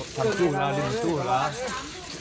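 A man talking over the rasping strokes of a hacksaw cutting through an elephant's ivory tusk.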